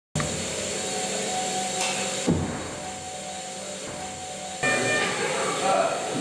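Steady hum and hiss of hospital room tone, likely ventilation or equipment. There is a single low thump about two seconds in, and indistinct voices join the background near the end.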